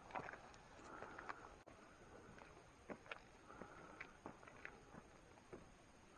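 Near silence, broken by a few faint scattered clicks and soft rustles.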